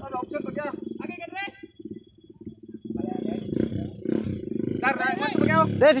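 Dirt bike engine running with a rapid low buzz, under people shouting and calling out. The shouting gets loud near the end.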